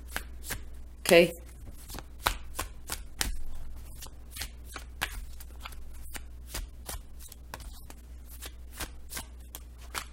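A deck of tarot cards being shuffled by hand: a run of light, irregular card clicks and flicks, a few a second.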